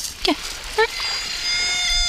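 A tabby cat giving one long, drawn-out meow at a nearly steady pitch, starting about a second in.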